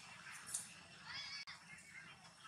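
Macaque monkey giving a short, high-pitched squealing call about a second in, with a brief sharp noise just before it.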